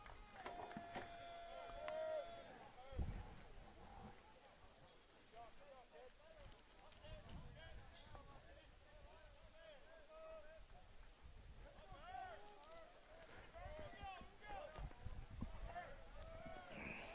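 Faint, distant calling and chatter of ballplayers' voices across the field, scattered short calls that come more often in the second half, over a quiet outdoor background.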